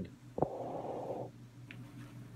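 A light tap, then a brief rustle of under a second as a paper poster board of mounted photos is handled, over a steady low electrical hum.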